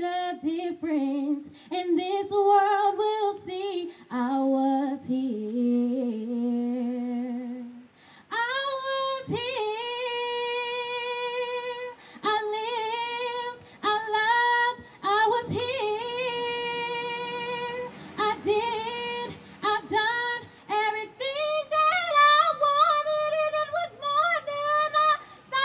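A young woman singing solo and unaccompanied into a microphone, in phrases with long held notes. The melody steps up higher for the last few seconds.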